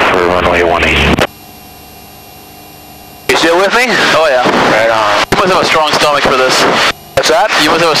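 Voices over the aircraft radio and intercom, cutting in and out abruptly as transmissions key on and off. In the gap a little over a second in, only a faint steady engine drone comes through the headset feed.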